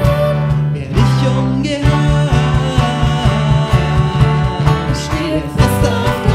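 A live band playing a German worship song: a young woman and a man singing together over acoustic and electric guitar and keyboard. The bass moves from held notes to an even, driving pulse about two seconds in.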